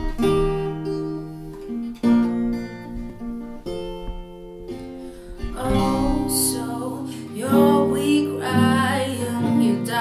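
An acoustic guitar and a second guitar playing a quiet picked and strummed intro; about halfway through, a woman's voice comes in singing over them.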